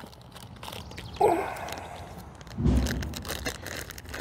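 Handling noises: rustling and light clicks as a sling's cords and a wrapped practice ball are picked up, with a dull thump about two and a half seconds in and a run of small clicks near the end.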